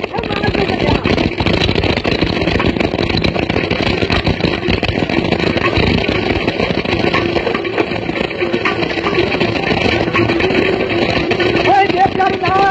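Audience applause with crowd noise, a dense steady clatter. Just before the end a voice comes back in singing.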